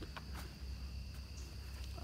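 Crickets trilling steadily, a constant high thin tone, over a low steady rumble, with a few faint clicks in the first second or so.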